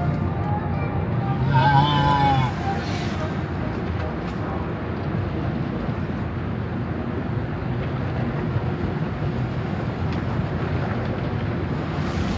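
Automatic car wash heard from inside the car: a steady rush of water spray and brushes working over the windows and body.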